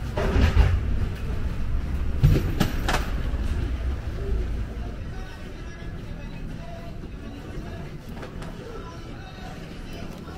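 Airport terminal ambience: a low rumble with a few sharp knocks in the first three seconds, fading into a quieter steady hum with distant voices near the end.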